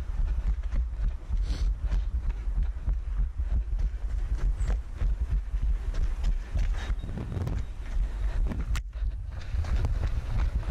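A runner's quick, regular footfalls on paving, picked up by a head-mounted action camera, over a constant low rumble of wind buffeting the microphone. A single sharp click stands out near the end.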